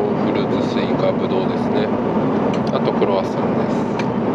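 Steady cabin noise of an Airbus A350-900 airliner in flight, with faint indistinct voice sounds over it and a few light clicks between two and three seconds in.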